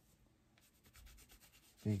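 Gloved hand rubbing a first coat of wax into a sanded wooden sculpture base: a faint, quick scuffing of strokes over the wood, starting about half a second in.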